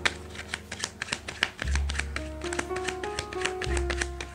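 A deck of tarot cards being shuffled by hand, a rapid, irregular run of crisp clicks and flicks, over soft background music of sustained notes with a low bass.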